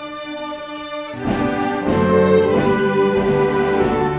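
Youth orchestra of bowed strings, winds and piano playing an arrangement of a holiday medley. A quieter passage gives way about a second in to the full ensemble playing louder, with several accented chords.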